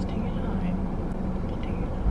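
Steady low rumble of a car's engine and running gear heard from inside the cabin, with no change in level.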